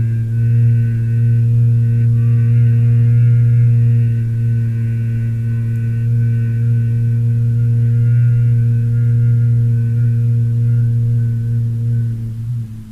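A man humming one long, steady low note with his mouth closed: bhramari pranayama, the humming-bee breath, held on a single out-breath.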